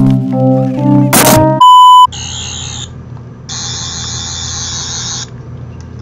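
Retro channel-intro sound: a short musical phrase ends about a second and a half in, cut off by a loud, steady electronic beep of about half a second. Two stretches of fluttering, buzzing hiss follow over a low hum, like tape static.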